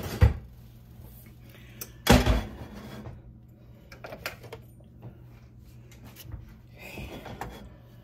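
A knock, then a stainless steel saucepan set down with a clank on an electric coil burner about two seconds in, followed by a few light clicks of handling.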